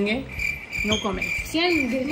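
A steady high-pitched tone sets in just after the start and holds, with a couple of short voice sounds near the middle and the end.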